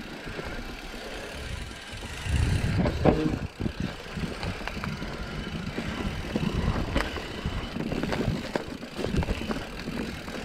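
Mountain bike riding fast over dirt singletrack, heard from a camera on the rider: a steady rumble of tyres on dirt and the rattle of the bike. Sharp knocks come over roots and bumps, and it is loudest about two to three seconds in.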